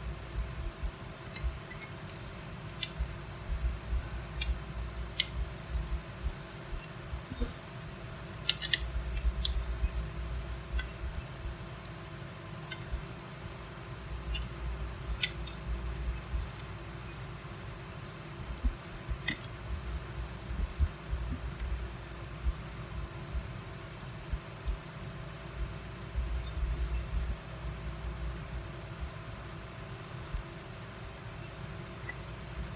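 Scattered small clicks and plastic rattles as the parts of a plug's strain relief are fitted by hand into its plastic housing, with low handling bumps, over a steady faint hum.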